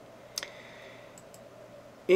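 A single computer mouse click about half a second in, followed by two faint ticks about a second later, over a faint steady hum.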